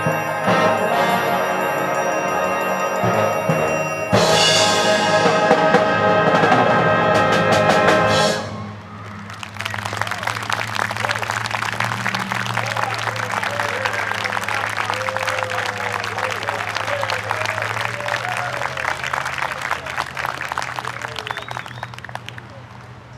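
Concert band with brass playing the closing bars of a piece, ending on a loud held chord that cuts off about eight seconds in. Audience applause follows and fades near the end.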